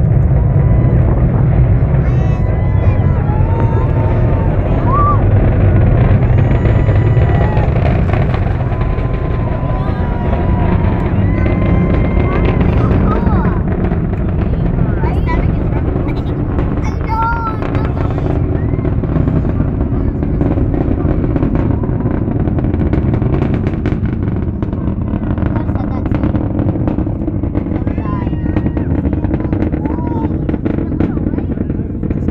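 SpaceX Falcon 9's nine Merlin first-stage engines heard from a distance as the rocket climbs: a deep, continuous rumble with a ragged crackle through it, slowly fading in the second half.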